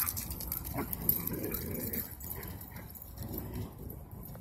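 Dogs playing, with faint whimpers.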